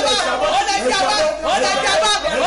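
A woman praying aloud in a loud, continuous voice.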